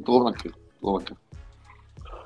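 A man's voice in two short bursts within the first second, then a pause with faint room noise.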